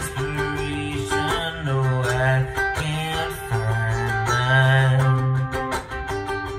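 Ukulele strummed in a steady rhythm, playing a run of chords.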